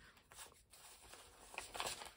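Paper banknotes rustling faintly as they are pulled from a cash envelope and shuffled between the hands, with a few slightly louder rustles near the end.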